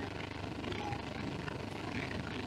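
Steady low room noise: an even hum with no distinct events, much quieter than the speech around it.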